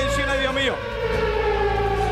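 A long siren-like tone sliding slowly down in pitch over a steady low rumble, with short calls of voices over it.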